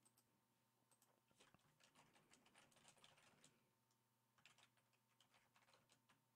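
Faint computer keyboard typing: a quick run of key clicks for a couple of seconds, a short pause, then more keystrokes near the end.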